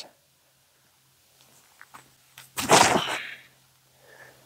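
A disc golf drive: a few faint steps on the tee pad, then a single short, loud rush of noise about two and a half seconds in as the disc is thrown.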